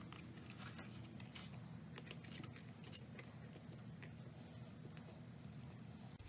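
Faint clicks and taps of wooden colored pencils being picked up and pressed into place in a form, over a low steady hum.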